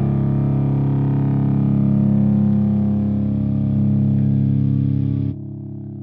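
End-card music: a single held, distorted electric guitar chord ringing out steadily. About five seconds in its upper tones cut off suddenly, and a quieter low ring carries on.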